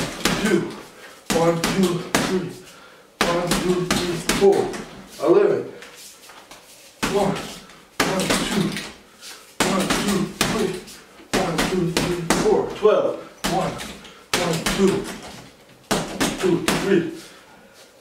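Gloved punches landing on a heavy punching bag in short combinations of one to four strikes, each a sharp thud, with a man's voice counting along between the groups.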